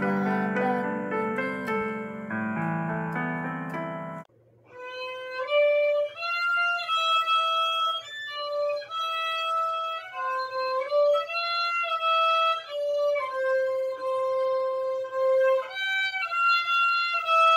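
Electronic keyboard playing chords under a melody, cutting off about four seconds in; after a brief silence, a solo violin plays a slow melody of long held notes.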